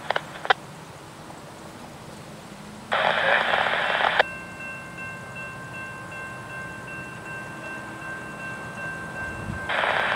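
A scanner radio transmission ends with two clicks. About three seconds in comes a second of loud hiss that cuts off suddenly. From then on the grade crossing's warning bell rings steadily as the gates start to come down.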